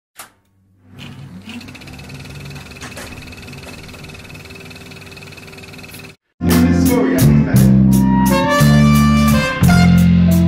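A live band jamming: a drum kit with cymbals and guitar over heavy low notes, coming in loud about six seconds in. Before it there is a quieter, muffled stretch with a faint steady tone.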